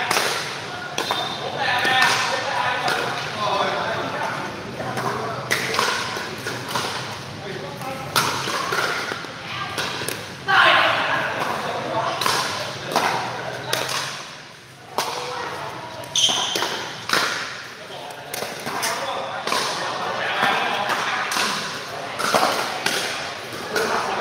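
Pickleball paddles striking a hard plastic pickleball during rallies: sharp pops at irregular intervals of one to two seconds, with players' voices between the shots.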